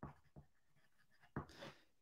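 Near silence with a few faint clicks from keys or a mouse at a computer.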